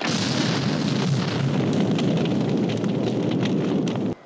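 Film soundtrack of a car exploding and burning: a loud rush of fire that starts suddenly, with crackling all through it, then cuts off abruptly.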